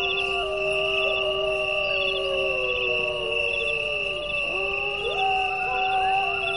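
Background music: sustained electronic tones with slowly gliding pitches and a soft high chirping figure about once a second.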